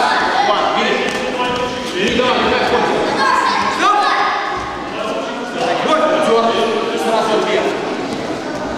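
Several voices shouting at once in a large, echoing gym hall, with a few dull thuds of blows landing.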